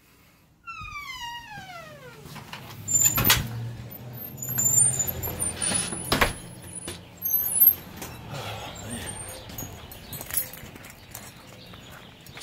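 Outdoor pre-dawn ambience: a falling call near the start, short high bird-like chirps scattered through, and two sharp knocks, one about a quarter of the way in and one about halfway, over a low steady hum.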